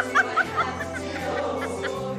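A woman giggling in a few quick, high bursts that die away about half a second in, over a show choir's music that plays on.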